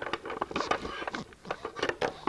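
Plastic markers clicking and clattering against each other and the storage tray as a handful is pulled out of a drawer-style marker organizer and set down on the table: a quick, irregular run of small sharp clicks.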